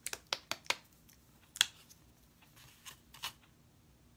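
Sharp clicks and taps from handling a small plastic bottle of acrylic craft paint: a quick run of four in the first second, a louder one about a second and a half in, then two more near the end.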